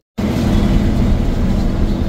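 Passenger bus engine and road noise heard inside the moving bus: a steady low rumble with a faint engine hum. It starts after a split-second silent gap at the very beginning.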